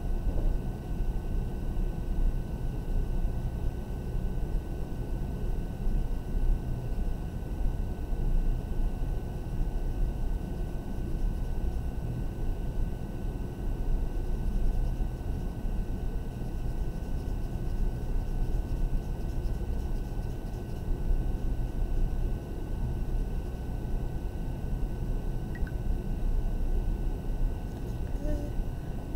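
Graphite pencil shading back and forth on paper on a desk: a continuous rough rubbing that flutters with each quick stroke.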